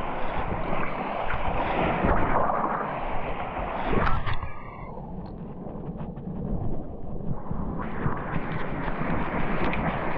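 Wind rushing over the camera microphone and shallow surf washing around a wading angler. About four seconds in comes a sharp knock or splash, after which the sound goes muffled for about three seconds before the wind and water noise returns.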